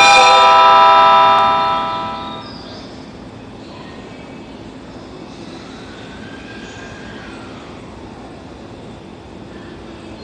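Horn of a JR East E257 series 5500 express train sounding one loud, steady blast of about two seconds for departure. The blast fades out into the echo of the covered platform, followed by quieter steady station and train noise.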